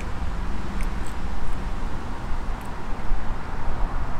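Steady low rumble of nearby road traffic, with a few faint ticks.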